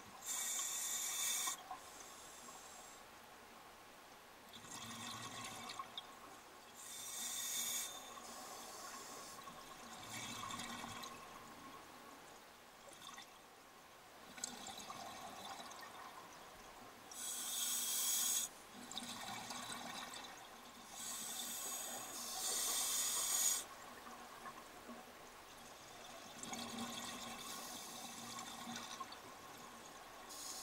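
Scuba diver breathing on an open-circuit regulator underwater: a soft hiss through the demand valve on each inhale, then a rush of exhaust bubbles a second or two long on each exhale, several times at irregular intervals.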